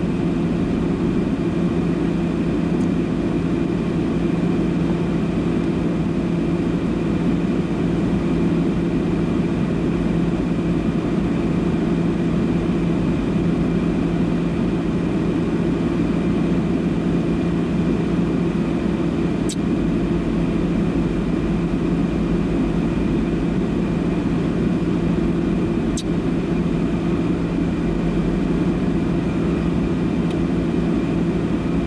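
Steady drone inside a car's cabin while the car sits stationary with its engine idling, with two faint ticks in the second half.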